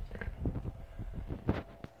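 Handling noise from a handheld camera: low rustling and rumble with a few light clicks and knocks, the sharpest about a second and a half in.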